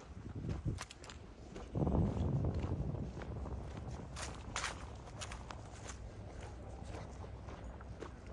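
Footsteps on a concrete walkway, with a few short scuffs and clicks and a low rumble about two seconds in.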